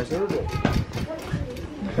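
Background voices of people talking, with a run of light taps.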